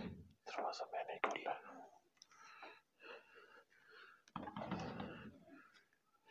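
Low whispering by a man, too soft for the words to be made out, with a slightly louder whispered stretch near the end.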